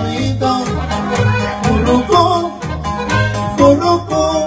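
Live norteño band playing an instrumental break: a button accordion carries the melody over an upright bass (tololoche) plucking alternating low notes in a steady rhythm, with sharp rhythmic strokes on top.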